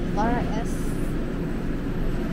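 Steady low background noise of a store checkout area, with a short snatch of a voice about a quarter second in.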